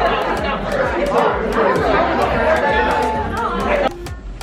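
Many voices chattering at once in a lecture room, with background music with a steady beat under it. The chatter cuts off suddenly near the end.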